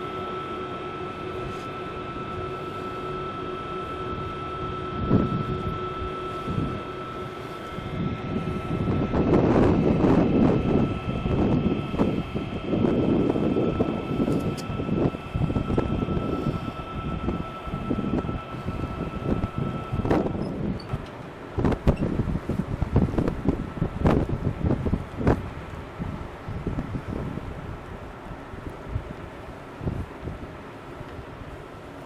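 Wind buffeting the microphone in uneven gusts from about eight seconds in, on the open deck of a moving river cruise ship. Under it runs a steady hum with a faint high tone that stops about twenty seconds in.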